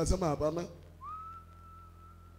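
A single high, thin whistle-like note about a second in, sliding briefly up and then held steady for over a second.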